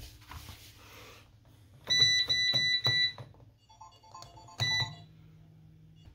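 Kogan front-loading washing machine's electronic beeper playing a quick run of high beeps, then a softer short tune, then one more beep. A low steady hum sets in after the last beep.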